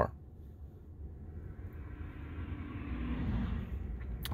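Road and traffic noise heard from inside a Tesla's cabin as it creeps along in stop-and-go traffic: a soft rumble and hiss that swells over the second half.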